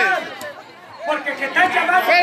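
A man speaking in a loud, raised voice into a microphone, breaking off briefly just after the start and picking up again about a second in.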